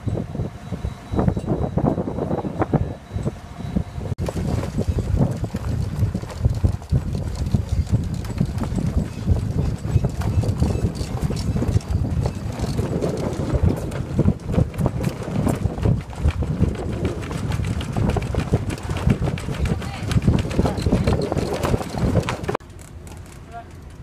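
Strong wind buffeting the microphone on a sailing yacht's deck, with a slack sail flapping in the wind and giving irregular knocks.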